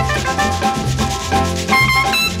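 Instrumental samba-jazz from a vinyl LP: brass lines over bass and Latin percussion, between sung choruses.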